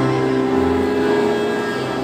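Children's pianica (melodica) ensemble holding long, steady reed notes that change pitch every half second or so, over low bass notes.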